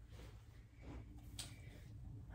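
Faint rustle of clothing fabric being handled, a few soft brushes over a low steady room hum.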